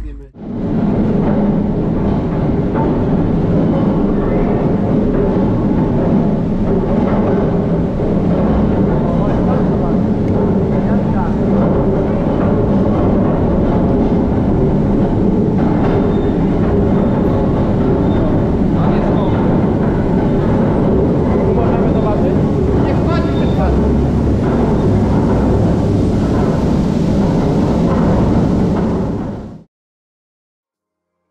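The water-powered winding machinery in the machine house of an Elbląg Canal inclined plane running with a steady, loud rumble and clatter, with people's voices mixed in. The sound cuts off suddenly near the end.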